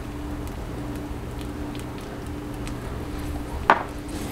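Egg-topped tortilla cooking in a non-stick frying pan, with sparse faint crackles of sizzling over a steady low hum, and one sharp knock about three and a half seconds in.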